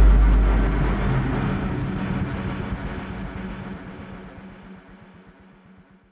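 Logo-sting sound effect: a deep cinematic boom that hits just before and rumbles on, fading away steadily over about five seconds.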